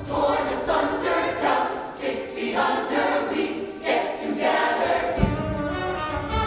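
Musical-theatre cast ensemble singing together, the voices carrying nearly alone with the low accompaniment dropped out. The band's bass comes back in about five seconds in.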